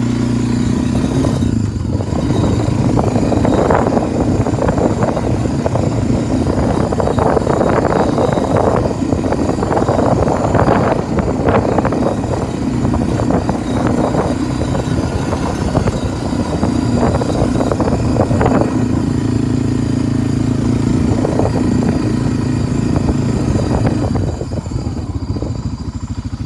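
Honda four-wheel-drive ATV's engine running steadily while riding over snow, with irregular surges of noise on top; the level eases slightly near the end.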